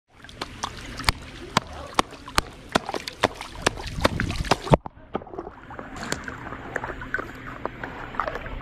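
A sea otter pounding an oyster shell against a hard surface to open it: a run of sharp knocks, about two or three a second, with water splashing. The knocking breaks off about five seconds in, leaving quieter splashing and a few faint taps.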